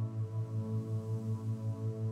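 Low isochronic tone pulsing evenly about five and a half times a second, a theta-rate beat meant for brainwave entrainment, over a steady ambient drone.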